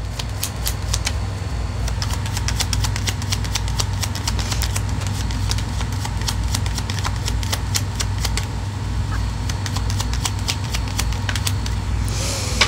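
A deck of tarot cards being shuffled by hand: a dense, irregular run of light clicks and flicks. A steady low hum runs underneath.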